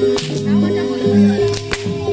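Two sharp cracks of a dancer's whip (pecut), one near the start and one near the end, over loud jaranan gamelan music with held tones and a repeating beat.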